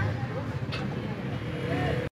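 Busy street background: a steady low engine rumble of traffic with voices in the background and a single click early on.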